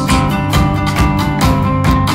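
Live band music: a strummed acoustic guitar over bass, with drums keeping a steady beat of about four hits a second; no singing.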